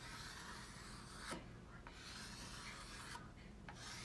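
Scratchy rubbing strokes across a hard surface, each about a second and a half long with short pauses between, and a light click about a second in.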